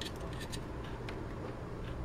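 A cut plastic filler piece being test-fitted into the metal 3.5-inch drive bay of a PC case: faint, light clicks and rubbing of plastic against the bay opening, over a steady low hum.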